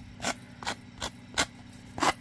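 A sanding block scraping along the cut edge of a thick cardboard tag in a few short strokes, smoothing out the rough edge.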